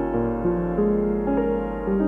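Grand piano played slowly and softly, a new chord or melody note every half second or so, each one left ringing. A steady low hum from the recording runs underneath.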